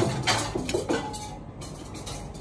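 Metal serving spoon clinking and scraping against a stainless-steel serving dish as rice is scooped out. A quick cluster of clinks comes in the first second, then it goes quieter.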